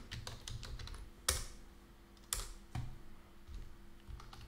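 Typing on a computer keyboard: a quick run of keystrokes in the first second, then three separate, louder clicks.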